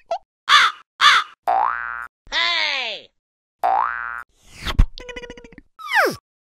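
A string of cartoon comedy sound effects. Two quick whooshes come first, then a rising boing-like tone and a wobbly glide falling in pitch. Another rising tone follows, then a whoosh with a low thud and a rapid rattle, and a steeply falling whistle near the end.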